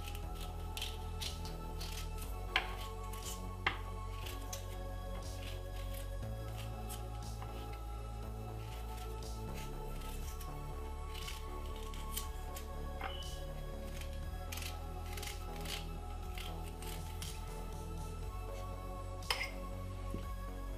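Background music with a steady bass, over short, sharp clicks and scrapes of a small knife peeling the skin off a piece of fresh ginger. A few of the clicks stand out louder.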